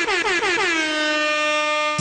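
DJ air horn sound effect: a fast stutter of short horn blasts at about eight a second, each dipping in pitch, running into one long steady blast that cuts off suddenly.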